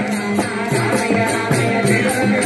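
Men singing a Rama bhajan namavali together, a devotional chant of Rama's names, kept in time by small hand cymbals struck about four times a second.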